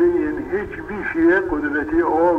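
A man's voice speaking in long, drawn-out pitched syllables.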